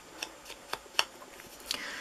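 Sponge ink dauber dabbing onto a cardstock snowflake: light taps about four a second, then a short soft rubbing near the end.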